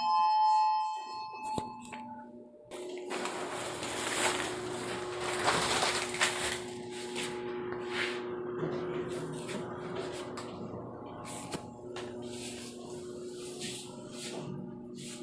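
A two-tone elevator chime rings out and fades in the first second or so. From about three seconds in comes the steady hum and rushing air noise of a moving elevator car, with a few small knocks and clicks.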